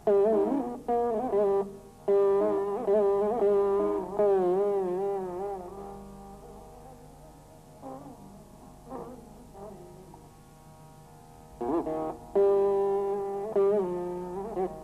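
Veena played solo in raga Begada, Carnatic style: plucked notes held and bent up and down in wide, wavering slides (gamakas). Loud phrases open it, a softer passage of a few quiet plucks follows in the middle, and loud playing comes back near the end.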